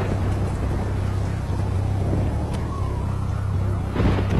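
Film sound of a rainy night: a steady low rumble under an even hiss of rain, with a faint rising tone past the middle.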